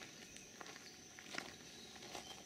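Faint footsteps on loose gravel: a few soft, scattered clicks over a quiet background.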